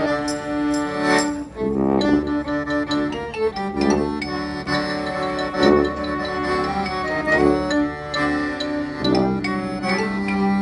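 Klezmer band playing a slow tune live: violin and clarinet carry the melody with sustained notes and sliding ornaments over a sousaphone bass.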